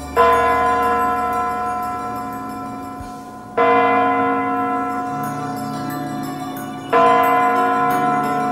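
A large clock bell striking slowly: three strikes about three and a half seconds apart, each ringing out and fading before the next. It is the clock tolling midnight for the New Year.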